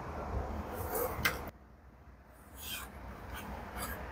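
Faint handling noise of wires and multimeter test probes being moved and pressed together: light rubbing with several small clicks, the sharpest a little over a second in.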